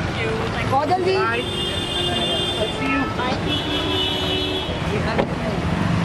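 Busy street traffic noise with people calling out over it. A vehicle horn sounds twice in long steady blasts, about a second in and again just past the middle.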